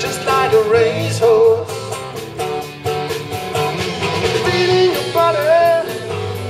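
Live rock band playing an instrumental passage: an electric guitar line with bent, gliding notes over bass guitar and drum kit, with steady cymbal strokes.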